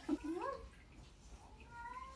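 A pug whining faintly: short rising whimpers at the start, then a thin, steadier whine near the end.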